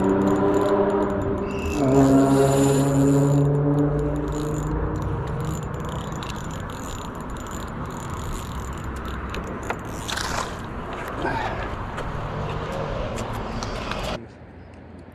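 Spinning reel being wound and handled, with light clicks and scrapes. In the first few seconds a steady pitched hum sits over it.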